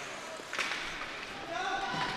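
Ice hockey rink game sound: a steady scraping hiss of skates on ice, a single sharp knock about half a second in, and a distant high-pitched voice calling out near the end.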